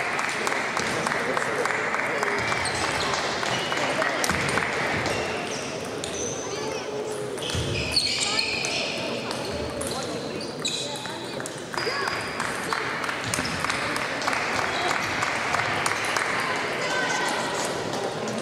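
Table tennis rallies: the ball clicking sharply off paddles and the table in quick, irregular succession, over a steady murmur of voices in a large sports hall.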